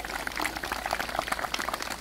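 Small audience applauding: many hand claps in a dense, even run.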